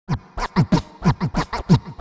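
Turntable scratching on a music track: a record pushed quickly back and forth, about nine short strokes in two seconds, each a sliding pitch.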